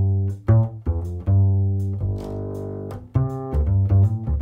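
New Standard LaScala hybrid double bass played pizzicato in a jazz line of plucked notes, with one longer note held about two seconds in. The acoustic sound of the bass is mixed with its amplified signal through a Sansamp Para Driver DI.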